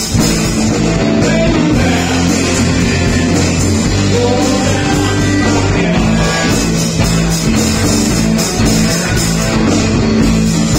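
Live bar band playing a rhythm-and-blues rock song: electric guitar and electric bass over a steady beat, with guitar notes bending in pitch about four seconds in.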